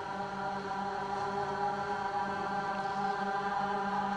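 Sustained droning music of steady held tones, with no beat, slowly growing louder.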